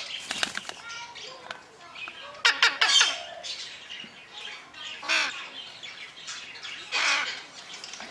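Male red-sided Eclectus parrot making a series of short vocal sounds, the loudest about two and a half seconds in, with further ones near five and seven seconds in.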